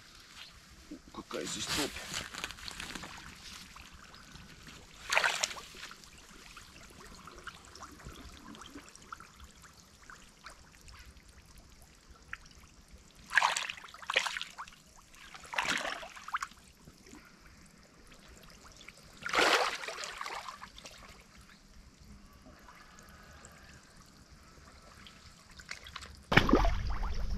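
Rubber chest-wader boots splashing and sloshing in shallow water as a person wades in from the bank, sinking into the soft, boggy mud near the shore; about six brief splashes a few seconds apart.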